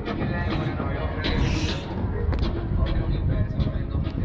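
Indistinct crowd voices and faint background music over a steady low rumble, with a brief hiss about a second and a half in.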